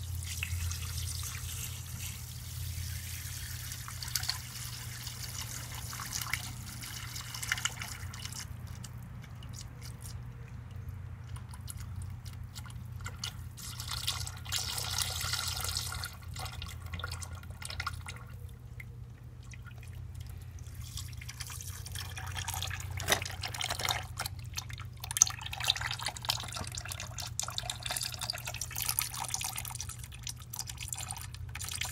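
Clay slurry being poured through a fine mesh strainer and funnel, a thin stream trickling and dripping into watery clay in a plastic cooler, with small clicks and splashes throughout.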